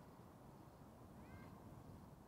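An animal's short mewing call, one brief arching cry about a second in, over a faint low rumble.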